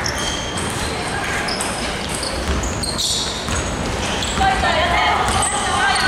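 Basketball game in a large, echoing sports hall: the ball bouncing on the wooden court as it is dribbled up the floor, many short high sneaker squeaks, and voices calling out from about four seconds in.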